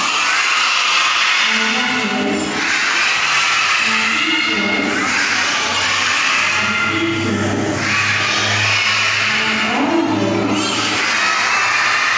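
A large group of young children singing or chanting together, in repeated phrases about every two and a half seconds.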